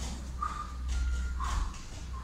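Hands and bare feet thudding softly on foam floor mats during repeated burpees, over a steady low hum.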